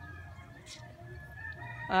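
A rooster crowing faintly, its call drawn out over a low steady background rumble.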